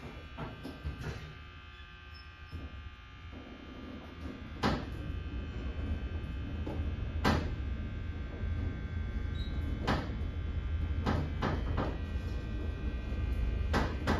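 Hydraulic elevator running upward: a low, steady hum from the pump motor, louder from about four seconds in, with several sharp clicks along the way.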